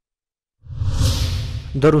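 A whoosh transition sound effect with a low rumble underneath, starting after a moment of dead silence and swelling then fading over about a second, marking a cut to an on-screen graphic. A man's voice resumes narrating near the end.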